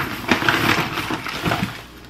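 Thin plastic produce bags rustling and crinkling as groceries are pulled out of a shopping bag, with a steady stream of small crackles.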